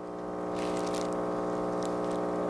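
KitchenAid KF8 super-automatic espresso machine brewing, its pump running with a steady electric hum that swells up in the first half-second, as espresso streams from the spout into two glasses.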